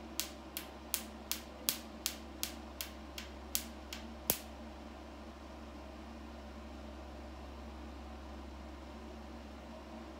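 Picosecond laser handpiece firing pulses on facial skin, with a sharp click at each pulse, about three a second; the last click is the loudest. The pulses stop a little under halfway through, leaving the steady hum of the laser unit's cooling fans.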